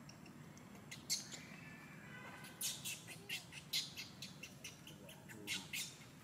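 Short, high-pitched chirps and squeaks at irregular intervals, with one falling squeal about two seconds in.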